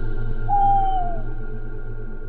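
Eerie horror-music drone of steady sustained tones, with a single long hoot about half a second in that holds its pitch and then slides down.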